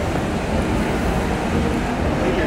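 Steady street noise outdoors: a low, even rumble of traffic with no distinct events.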